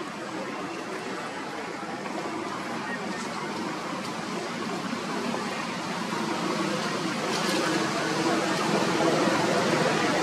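Steady outdoor background noise with indistinct voices mixed in, growing gradually louder.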